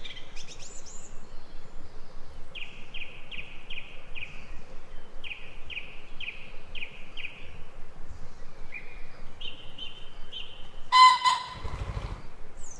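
A wild songbird calls outdoors over steady background noise: two runs of short repeated falling notes, about two or three a second, then a different short phrase. Near the end there is a brief, louder call, the loudest sound, followed by a low rumble.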